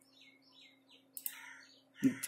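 Faint bird chirping in the background, a quick run of short high notes, followed by a soft click a little after a second in.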